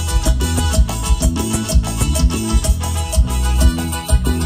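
Live band playing a chilena through a loud PA: drum kit, electric bass and electric guitar, instrumental, with a steady, quick dance beat.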